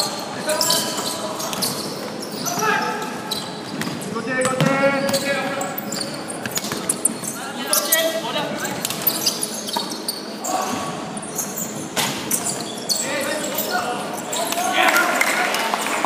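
Basketball game in an echoing sports hall: a ball bouncing on the wooden court, with players' scattered shouted calls between the bounces.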